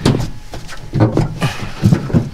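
Carpeted Cargo Dog storage box being shoved against the center box, giving a few dull knocks and thumps, the loudest just before the end, as its alignment pins are worked into place.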